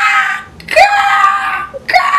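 A person shrieking with excitement: two long, high-pitched shrieks, the first fading about half a second in and the second held for about a second.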